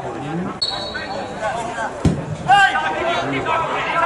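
A referee's whistle gives one short, steady blast about half a second in, and a single sharp thud follows about two seconds in. Players shout on the pitch afterwards.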